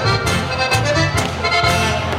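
Diatonic button accordion (Steirische Harmonika) and acoustic guitar playing a lively Bavarian folk tune, the accordion's bass notes pulsing about twice a second.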